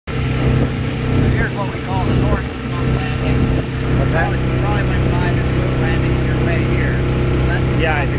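Motorboat engine running steadily under way, a constant low hum heard from aboard the boat, with voices over it.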